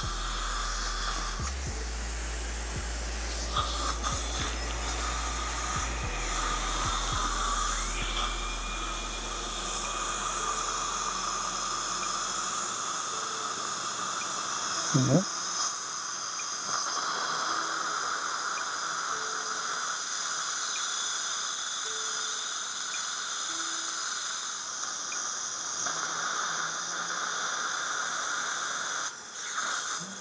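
Dental suction tip drawing air and fluid from a patient's mouth: a steady hiss with a faint whistle, with a short knock about halfway through.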